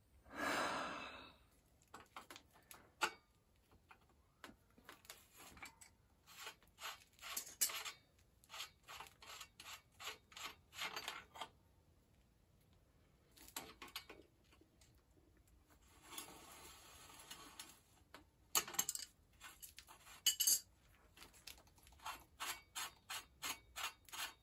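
Bicycle bottom-bracket bearing cup being unscrewed by hand from the steel frame shell: quiet, irregular metallic clicks and ticks from the threaded cup and its ball bearings, with a short stretch of rubbing and scraping partway through.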